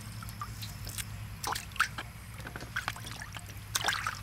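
Apples being washed by hand in a steel bowl of water: drips and small splashes with short clicks and scrapes, the sharpest near the end.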